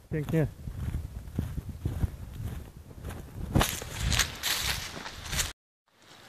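Runners' footsteps on a dirt forest road, with a brief voice call right at the start. A louder burst of noise comes about three and a half seconds in, and the sound cuts out abruptly just before the end.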